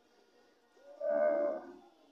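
A voice holding one drawn-out note for about a second, amplified through a PA loudspeaker.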